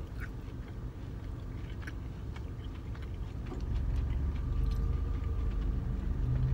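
A person chewing a sweetened dried orange slice: soft, wet mouth sounds and small clicks over a low rumble. A steady low hum comes in about four seconds in.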